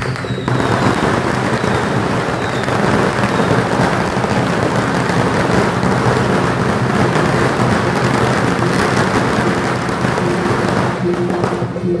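A long string of firecrackers going off in a dense, continuous crackle. It starts about half a second in and stops about a second before the end.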